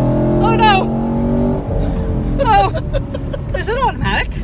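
A 2018 Camaro SS's 6.2-litre V8, heard from inside the cabin, runs at speed with a steady engine note that drops away about a second and a half in. Short excited exclamations from the occupants break in over it several times.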